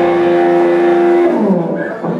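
Electric guitar holding one sustained note with no drums under it, then sliding down in pitch about a second and a half in as the note fades.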